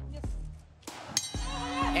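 A fight bell struck once, a little over a second in, with a ringing tail, signalling the start of the round; background music runs underneath.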